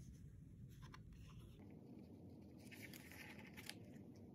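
Near silence with a faint rustle and a few soft clicks of white cardstock being handled and positioned over a card base.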